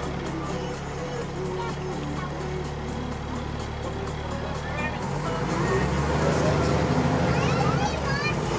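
A fire engine's diesel running, heard from inside the cab, its note changing and growing louder about five seconds in as the truck pulls away from the light. Muffled voices and music run underneath.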